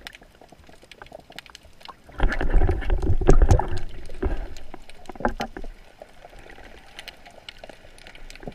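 Underwater sound picked up by a camera housing on a speargun: faint scattered clicks and crackles, then about two seconds in a loud, deep wash of water noise with knocks as the diver handles the gun and the speared fish. It fades over the next few seconds, back to faint clicking.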